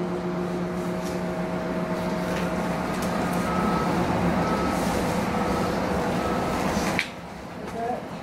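Steady drone of a distant motor, a low hum with a few higher tones over it, which cuts off suddenly about seven seconds in.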